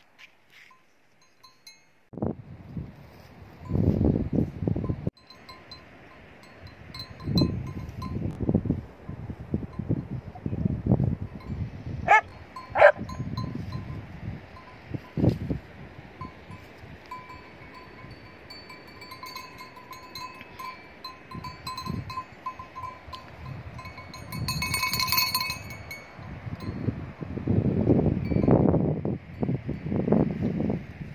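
Livestock bells ringing and clinking on a herd of sheep and goats, a steady metallic ringing that swells about twenty-five seconds in, over gusty wind rumbling on the microphone. Two short sliding calls come about twelve seconds in.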